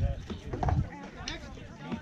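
Voices of people talking, with low thumps at the start and again just under a second in.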